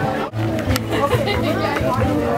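Background music with held bass notes and a voice over it, briefly cutting out about a quarter second in.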